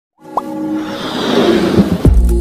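Music and sound effects for an animated logo intro: a short pop about half a second in, then a swell of rising noise over steady tones that builds up toward the end.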